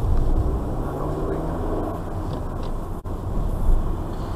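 A car driving slowly, heard from inside the cabin: a steady low engine and road rumble, broken by a brief dropout about three seconds in.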